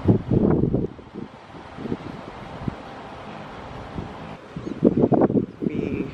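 Wind buffeting the microphone in low, rough gusts, strongest in the first second and again near the end, with a quieter steady low rumble in between.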